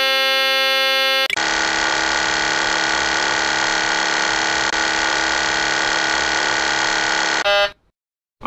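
Boeing 737-800 cockpit aural warning tones: one steady buzzer-like warning tone for about a second, then a different, harsher steady warning tone held for about six seconds. The first tone returns briefly near the end, and the sound then cuts off.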